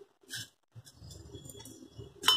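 Faint bird cooing in the background, with a single light clink of a hand on a steel plate near the start.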